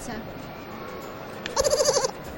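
Low crowd murmur, then near the end a short, high-pitched, rapidly quavering vocal sound like a bleat, most likely from someone in the crowd.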